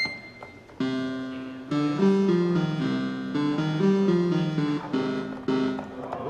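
Commodore 64 SID synthesizer played from a Music Port keyboard on its piano voice, with a short high beep at the start. About a second in a held chord sounds, then a tune of stepping notes in several voices runs until near the end.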